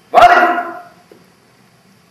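A single loud, bark-like vocal cry from a male actor, under a second long, fading quickly.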